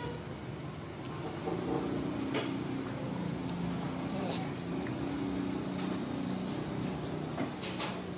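Low, steady engine hum that grows louder about a second and a half in and holds, with a few faint clicks.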